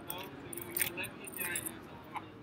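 Sheets of paper rustling in three short crinkly bursts as they are handled and leafed through, over background chatter of many voices.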